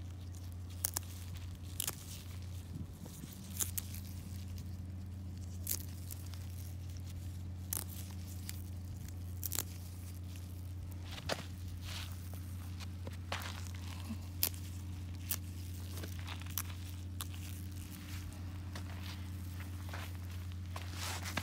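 Dill stems snapping and tearing as they are picked by hand, with light crunching of sandy soil underfoot: scattered sharp snaps about one every second or two. A steady low hum runs underneath.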